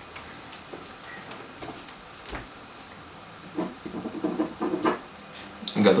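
Quiet small room with the light handling sounds of a pen and paper as a contract is signed: a few soft clicks and a low tap on the desk. Some low, soft murmuring comes in over the second half.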